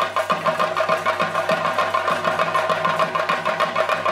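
Chenda drums played in a fast, dense, unbroken rhythm of strokes, with a steady ringing tone held above them.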